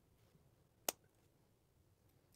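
A single sharp click about a second in as the small lever on a Kore Essentials B1 battle belt buckle is pushed back, closing the buckle onto the outer belt.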